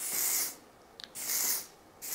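Aerosol hairspray can sprayed in two short bursts of about half a second each, with a faint click between them, fixing freshly separated curls.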